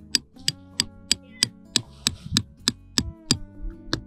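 Hammers striking metal tent pegs being driven into the ground: a steady run of sharp knocks, about three a second, over background music.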